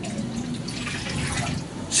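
A small glass of chlorine bleach poured into a water storage tank, the liquid splashing into the water about halfway through. It is a dose of chlorine to disinfect the tank water.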